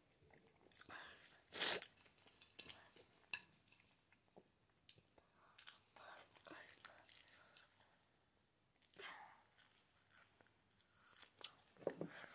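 Faint chewing and mouth sounds of someone eating in short, scattered bouts, with a brief breathy laugh about two seconds in.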